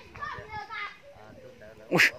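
Voices talking in the background, then a single loud, sharp thump near the end.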